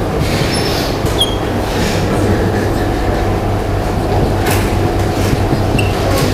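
Steady low hum and rumble, with a few short high squeaks of a dry-erase marker writing on a whiteboard.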